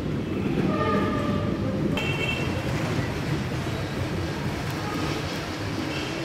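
Steady street rumble, with two short pitched toots: one from about half a second to near two seconds in, and a higher, shorter one at two seconds.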